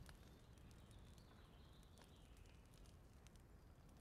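Near silence: faint room tone in a pause between lines of dialogue.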